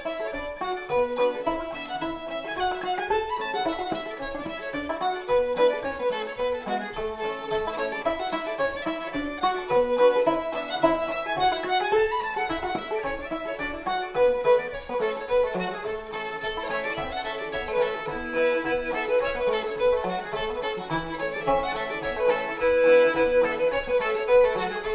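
Old-time fiddle and five-string banjo duet playing a tune in cross-A tuning, the fiddle carrying the melody over the banjo's steady rhythm.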